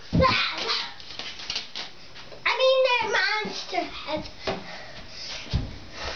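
A young child's voice: high-pitched wordless calls and babble during play, loudest about midway. There are also a couple of dull thumps, one near the start and one near the end.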